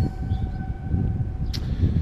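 A single steady tone held without change, stopping about one and a half seconds in, over a continuous low rumble.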